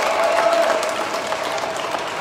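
Audience applauding, a dense patter of many hands clapping, with one long held voice call over it that fades out about a second and a half in.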